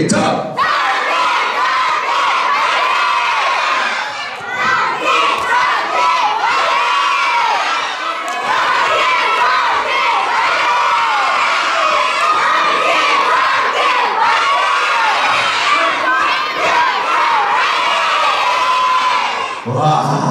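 A crowd of children shouting and cheering together, a team cheer kept up without a pause. The sound dips briefly about four and eight seconds in.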